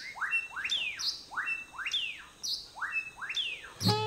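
A bird calling a repeated phrase of whistled notes, two rising and one falling, three times.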